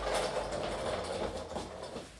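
Rustling of a quilted, padded jacket's fabric as it is pulled off a dress form. It is a continuous rustle that fades near the end.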